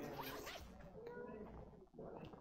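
A faint zipper being pulled on a soft carry bag.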